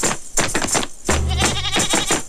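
Background music with a steady beat and a deep bass note that comes back about every two seconds.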